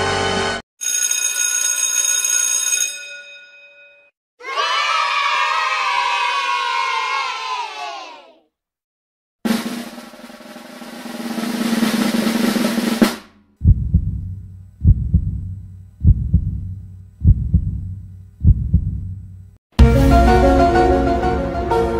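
A string of stock sound effects. A sustained chord fades out, then a pitched sound bends downward in pitch. About ten seconds in comes a drum roll swelling in loudness, followed by six sharp, heavy hits about a second apart, each dying away.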